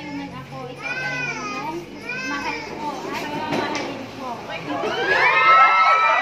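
Women's voices talking. From about five seconds in, a group of women breaks into loud, high-pitched excited squeals and laughter.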